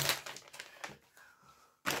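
Brief rustling and a few light clicks of plastic grocery packaging being handled, dying away to near quiet after about a second.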